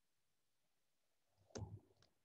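Near silence, broken about one and a half seconds in by a single short click with a brief low rustle after it.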